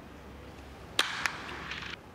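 Wooden baseball bat striking the ball: one sharp crack about a second in, followed by a second of noisy stadium ambience. It is the swing that sends the ball to the opposite field and into the stands for a home run.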